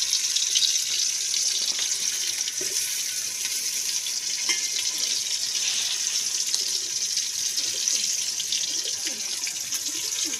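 Onions frying in hot oil in an aluminium pot over a wood fire: a steady sizzle with many small pops and crackles.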